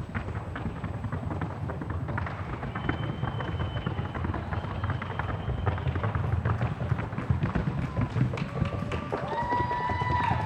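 Hooves of a Paso Fino gelding in the classic fino gait: a rapid, even patter of short, light hoof strikes, the four-beat footfall of the breed's gait.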